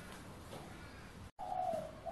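Faint room hiss, then, about a second and a half in, a bird cooing: a low wavering call in two short parts.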